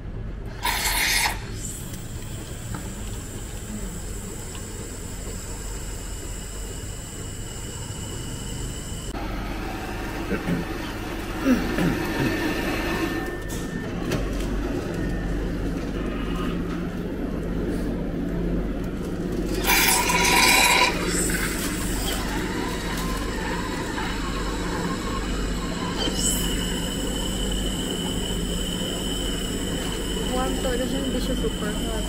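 Cafematic automatic drinks machine running as it prepares warm milk: a steady mechanical hum with a few short bursts of hiss, dispensing milk into a paper cup near the end.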